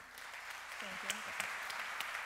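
Audience applause, a steady patter of many hands clapping that starts right away, with a voice briefly heard over it about a second in.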